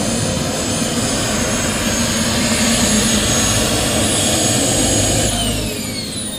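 Model jet's kerosene turbine running with a loud rushing roar and a high, steady whine as the RC Viper taxis in. About five seconds in, the whine starts falling in pitch as the turbine spools down.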